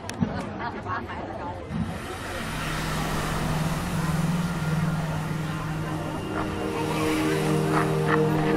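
Show soundtrack over loudspeakers: a low steady drone swells in about two seconds in and holds, with higher held tones joining near the end. Audience chatter in the first couple of seconds.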